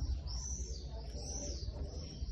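A songbird chirping in the background: a run of high, arching notes that each rise and fall, about two a second.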